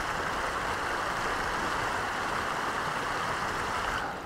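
Steady rushing of a moorland burn running over stones at a ford, the water at least knee deep.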